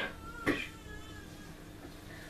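A man coughing close to a microphone: one short cough about half a second in, then low background noise.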